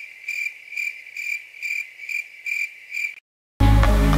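Cricket-chirping sound effect: a steady series of high chirps, about three a second, that starts and stops abruptly. Electronic music comes in loudly just before the end.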